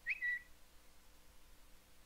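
A short whistled bird-tweet sound effect right at the start, under half a second long: a quick rise in pitch, then a slightly lower held note in two parts. Faint steady room tone follows.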